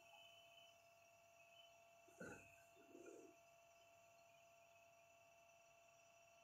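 Near silence, with two faint, short, low sounds about two and three seconds in.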